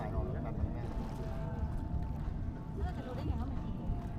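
Faint background voices over a steady low rumble of wind and boat noise.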